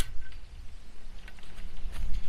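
Faint clicks and light scraping of high-tensile fence wire being fed through a hole in a PVC T-post, over a steady low rumble.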